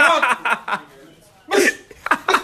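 A man laughing in short, broken bursts: a run of stifled laughter in the first second, then one more short burst about one and a half seconds in.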